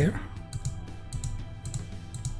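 Computer mouse clicking several times, sharp separate clicks as pen-tool points are set, over faint steady background music and a low hum.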